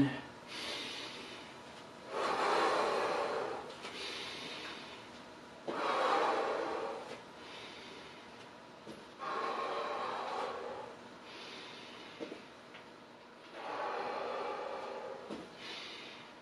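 A man's deep, audible breathing, big breaths drawn in and blown out in a slow steady rhythm, each lasting about a second and a half with short gaps, every other one louder, in time with side-to-side lunges.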